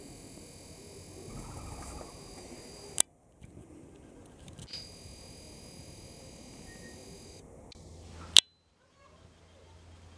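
Camcorder zoom motor whining high and steady as the lens zooms in, in two runs, with two sharp clicks, one about three seconds in and one about eight seconds in, over faint outdoor background.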